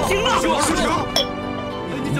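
Dramatic background music under urgent shouting, with a single sharp clink of a porcelain teacup lid against its cup a little past halfway.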